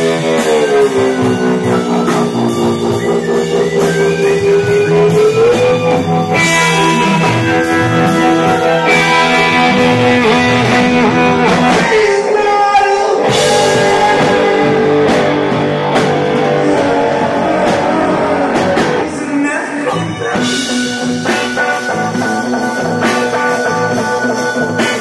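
Live rock band playing amplified electric guitars over drums, with long sustained notes that slowly bend in pitch.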